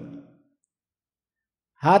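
A man's speech trails off, then about a second and a half of dead silence, and his speech resumes near the end.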